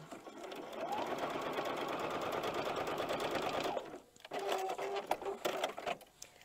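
Electric sewing machine stitching a seam through fabric strips and foundation paper. It speeds up over the first second, runs steadily and stops about four seconds in. A brief, quieter whir and a few clicks follow.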